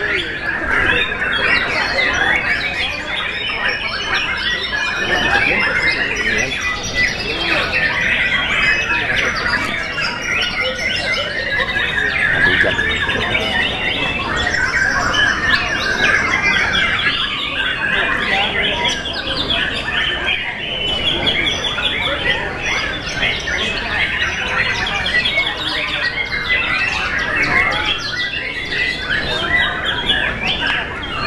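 White-rumped shamas singing without a break: a dense, overlapping stream of fast whistles, trills and harsh notes from several caged contest birds at once, the nearest bird among them.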